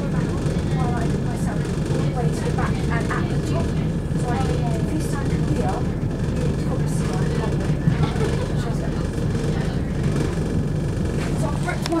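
Steady low rumble of a Southern Class 171 Turbostar diesel multiple unit running at speed, heard from inside the carriage: its underfloor diesel engines and wheels on the rails.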